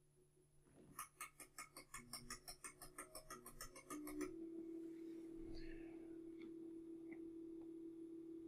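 Servo motor driven by a Kollmorgen AKD drive, whining faintly as its speed is raised in steps: the pitch of the whine climbs in small jumps, then holds steady from about four seconds in. Over the climb there is a quick run of clicks from a toggle switch being flicked again and again, about six a second.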